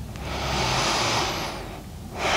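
One slow, deep breath close to a clip-on microphone, swelling and fading over about a second and a half.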